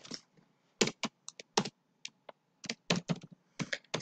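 Typing on a computer keyboard: a dozen or more separate key clicks at an uneven pace as a line of code is typed.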